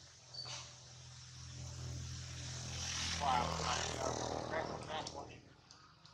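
A motor engine passing by: a low steady hum that swells to its loudest about three seconds in, then fades away.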